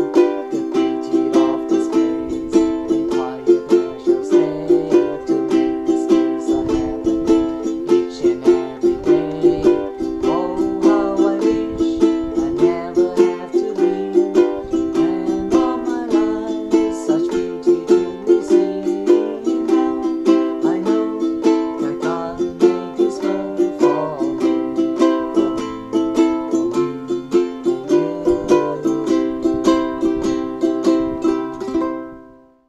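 Ukulele strummed in a steady rhythm, cycling through a C, A minor, F, G7 chord progression.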